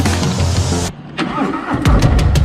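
Background music breaks off just before one second in; then the Harley-Davidson Road King Special's V-twin engine is cranked with a rising whine and catches near the end, starting into a loud low run.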